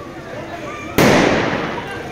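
A firecracker going off in the street: one sudden loud bang about a second in, dying away over the next second, over background crowd chatter.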